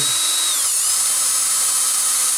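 Small electric drill spinning a 2.5 mm bit through a plastic RC-car front hub carrier, a steady motor whine with a hiss of cutting. The whine dips slightly in pitch about half a second in as the bit bites into the plastic.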